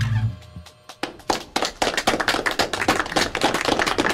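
A live band's final chord, with bass and guitars, stops about a third of a second in. After a short lull, from about a second in, several people clap irregularly.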